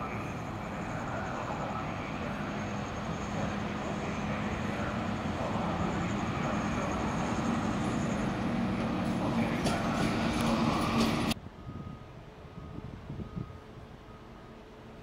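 MÁV class V43 electric locomotive approaching, its running noise and a steady low hum growing louder. The sound cuts off abruptly about eleven seconds in, leaving only faint background sound.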